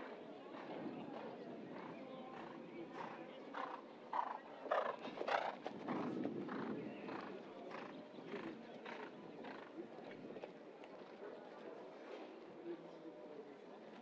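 A show-jumping horse's hoofbeats at the canter on turf: a regular stride beat about every half second or so, loudest around five seconds in. Indistinct voices can be heard behind it.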